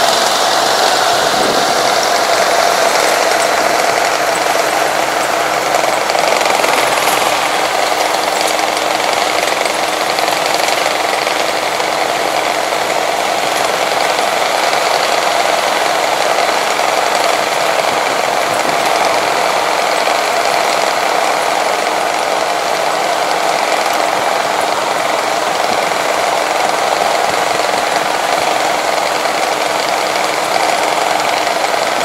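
Steady engine noise of vehicles moving slowly along a road, holding an even level with no sudden events.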